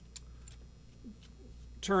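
A few faint clicks of a screwdriver working against the metal of a Rixson H340 walking-beam top pivot as it is turned to draw the pivot pin up, over a low steady hum.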